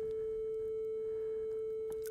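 Steady pure 440 Hz sine tone from tone-generator apps on two devices set to the same frequency. It holds an even loudness with no beats, the sign that the two sources are matched and in tune.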